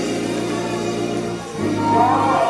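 Church keyboard music: sustained chords over a held bass note, the harmony changing about a second and a half in.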